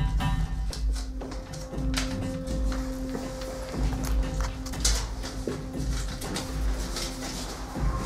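A single low note held steady, as background music, from about a second in. Frequent short clicks and rustles, as of a paper clue card being handled, run over it.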